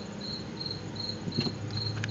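A cricket chirping steadily, about three short high chirps a second, over a low steady hum. A brief click comes about two-thirds of the way through.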